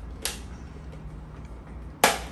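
A single sharp click about a quarter second in as a pry tool works the plastic top cover of a Roborock S5 robot vacuum loose, over a low steady hum.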